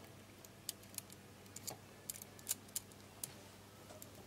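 Scattered small clicks and taps of wire and a screwdriver against the plastic housing and terminals of a contactor as a wire is routed and connected, the sharpest about two and a half seconds in, over a faint steady hum.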